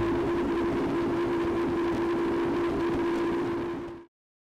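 Triple Mercury outboard motors running at high speed, over 70 mph: a steady engine note over a dense rush of wind and water. It fades out near the end.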